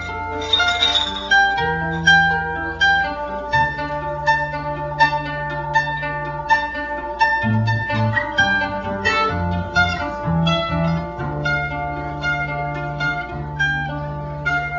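An acoustic guitar and a mandolin played together as an instrumental passage: a run of quick plucked notes over held lower notes, with no singing.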